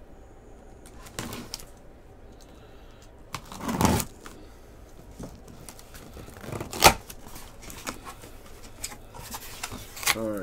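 Hands handling and opening a cardboard case of trading-card boxes. There is a scraping rustle about four seconds in and a short, sharp snap near seven seconds, with soft handling noise between.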